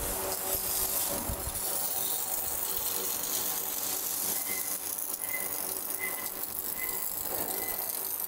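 A robotic arc welder crackling steadily as it welds a steel motorcycle frame, over factory machinery noise. Faint short high beeps repeat in the second half.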